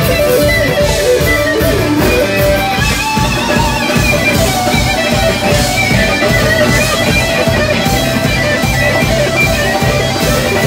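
Live funk band playing: two electric guitars play sustained, bending lead lines over bass guitar and drums.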